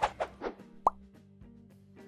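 Logo-animation sound effect: a short burst right at the start that fades quickly, then a single quick rising 'plop' about a second in, over a faint steady music tone.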